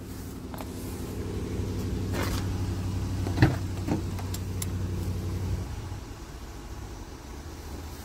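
The 3.6-litre V6 of a 2021 Jeep Grand Cherokee idling, a steady low hum that drops off about six seconds in. A few handling knocks and a door clunk come about two to four seconds in.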